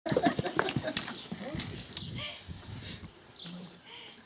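Gordon Setter puppies yelping and whining over a person's voice, with sharp knocks and clatter in the first two seconds; the sounds die down after about three seconds.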